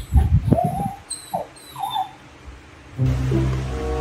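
Baby monkey giving a few short, rising squeaky whimpers among low thumps of handling. Background music starts about three seconds in.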